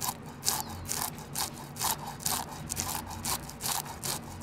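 A serrated ring fish scaler scraping the scales off a barbel, stroke after stroke against the lie of the scales, about two to three short scrapes a second.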